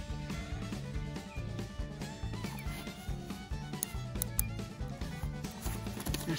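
Background music with a bass line that steps from note to note.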